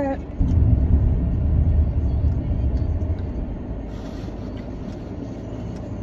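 Car interior road and engine noise while driving: a low rumble, heavier in the first few seconds and then easing off.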